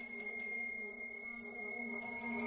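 Contemporary chamber ensemble with a solo violin playing a quiet passage of long held notes: a steady high tone sustained over a low held note, swelling a little near the end.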